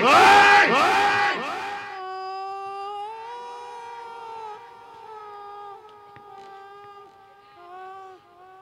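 Loud, echoing theatrical laughter: a run of 'ha' bursts, each falling in pitch, for about two seconds. It gives way to one long, wavering held note that fades slowly.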